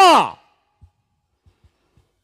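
A man's amplified voice through a microphone ends a long, held, high-pitched shout whose pitch drops as it cuts off about a third of a second in. Near silence follows, broken only by a few faint, soft low knocks.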